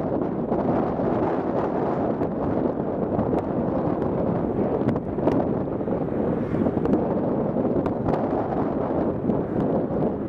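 Wind buffeting the camera's microphone: a loud, steady rumbling rush, with a few faint clicks scattered through it.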